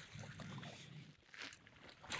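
Near silence: faint wind and water noise, with a soft knock about one and a half seconds in.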